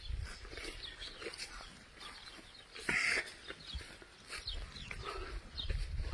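Faint outdoor ambience: scattered short animal calls, one clearer call about three seconds in, over an uneven low rumble.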